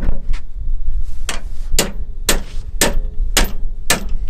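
Repeated metal clanks from steel tie-down chains being worked and tensioned on the low-loader deck: two knocks at the start, then a steady run of about two clanks a second from about a second in, over a low rumble.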